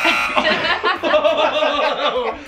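A group of people laughing hard together, starting suddenly and loudly.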